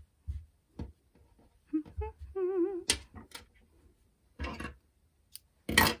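Soft rustles and taps of hands handling and smoothing a machine-knitted yarn cozy on a table. A woman briefly hums a wavering note about two seconds in. A short, louder burst comes near the end.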